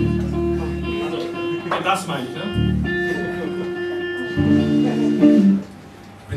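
Live band playing: electric guitar and bass guitar holding sustained notes over drums, with some voice, until the music stops suddenly about five and a half seconds in.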